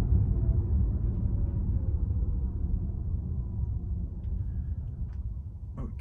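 Low, steady road and tyre rumble heard inside the cabin of an electric Tesla Model 3, with no engine sound. It fades gradually as the car slows toward an intersection.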